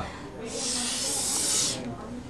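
One long hiss through the teeth, lasting about a second and a half.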